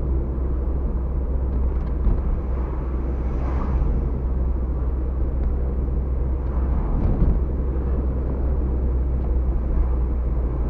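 Steady low rumble of a car driving, heard from inside the cabin: engine and road noise. A brief swell of louder noise comes about three and a half seconds in.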